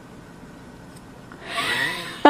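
Faint room background, then about one and a half seconds in a man with his mouth full of cake and ice cream lets out a loud, breathy, muffled sound through nose and mouth.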